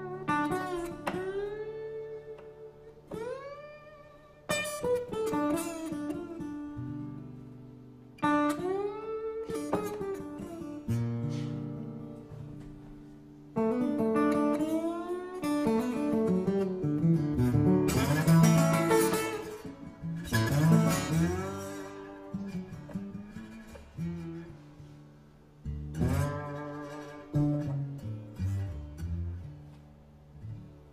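Solo acoustic guitar playing a slow blues introduction: picked phrases whose notes slide up into pitch, each phrase ringing out and fading before the next. It is busiest and loudest about two-thirds of the way through.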